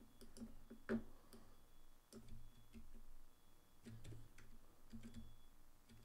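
Faint, scattered clicks and taps of a computer keyboard and mouse, one a little sharper about a second in, over a quiet room.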